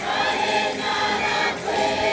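Choir singing in long held notes, breaking into a new phrase about one and a half seconds in.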